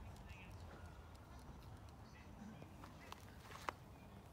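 Near silence: a low outdoor rumble with a few faint clicks, the sharpest one near the end.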